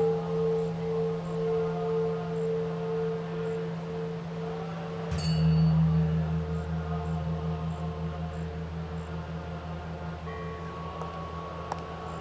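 A large temple bell ringing with a slow, wavering hum. It is struck again about five seconds in, adding a deeper tone, and a higher, thinner chime joins near the end.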